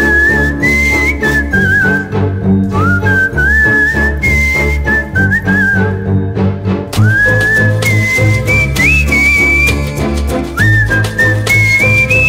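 Film song music: a whistled melody carries the tune in several phrases, each one sliding up into its first note, over a steady bass and rhythm backing.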